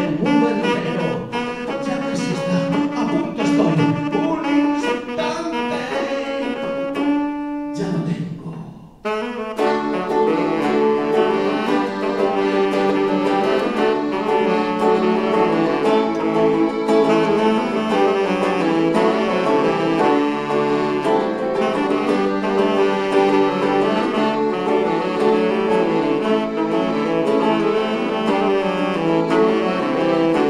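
Live saxophone playing a melody over acoustic guitar accompaniment. The music drops away briefly about eight or nine seconds in, then the ensemble comes back in fuller and keeps going.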